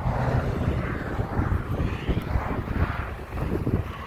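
Road traffic going by, with wind rumbling on the microphone.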